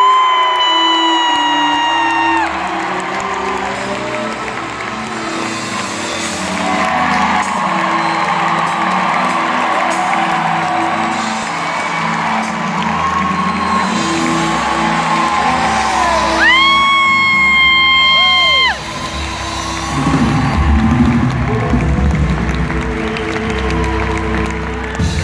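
Live band backing of sustained keyboard and bass chords, with a long held violin note at the start that sags slightly in pitch, and a second long high held note about two-thirds through that cuts off suddenly. Audience members whoop and shout over the music.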